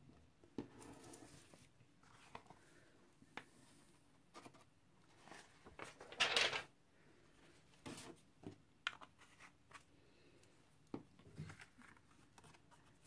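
Quiet handling sounds of papercraft work: scattered light taps and clicks of a small plastic embossing-powder pot and tools on a tabletop, and paper rustling, loudest in one short rustle about six seconds in.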